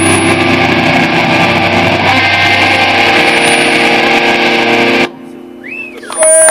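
Distorted electric guitars through amplifiers hold a loud, sustained chord that cuts off abruptly about five seconds in. In the quieter moment after the cut, a brief tone rises and falls near the end.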